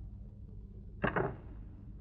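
A short, sudden whoosh about a second in, falling quickly in pitch, over a steady low hum.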